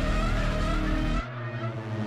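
A vehicle engine running, its pitch slowly rising, with the deep rumble dropping away about a second in; heard through playback of a music video.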